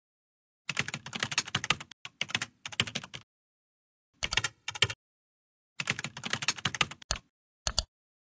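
Computer keyboard typing: several quick runs of rapid keystrokes broken by short pauses, as on-screen text is typed out.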